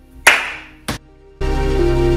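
Hands slapping together in a high-five: one loud smack with a short echoing tail, then a second, shorter smack just under a second in. Music starts about a second and a half in.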